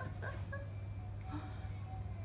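A rattan swivel chair giving short, scattered creaks and squeaks as a child shifts and settles on it, over a steady low hum.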